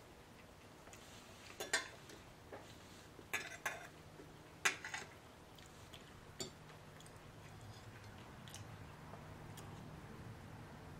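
A fork clinking and scraping against a dinner plate while cutting up food, about six short clicks in the first two-thirds, two of them louder. A faint steady low hum runs underneath and grows slightly toward the end.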